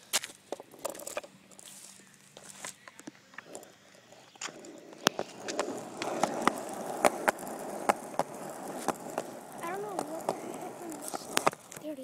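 Skateboard wheels rolling over pavement, the rolling growing louder and denser about four seconds in, with scattered sharp clicks and knocks throughout.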